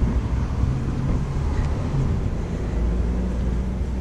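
Low, steady rumble of street traffic, with a faint engine hum that comes and goes.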